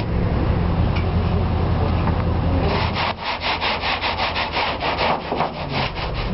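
Low, steady road and engine rumble inside a moving truck's cab. About three seconds in it drops away, and a fast, even run of rubbing strokes follows, about six or seven a second, stopping just before the end.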